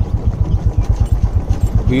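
Royal Enfield Bullet's single-cylinder four-stroke engine running at low revs under way, with a steady, rapid low beat.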